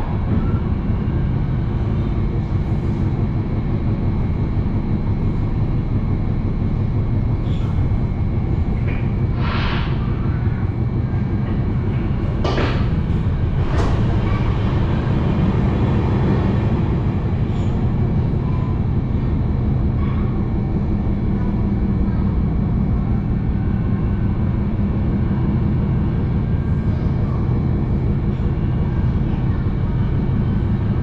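MARTA rapid-transit railcar running at speed, heard from inside the car: a steady, loud low rumble of wheels on rail. A few brief sharp clicks come about ten to fourteen seconds in.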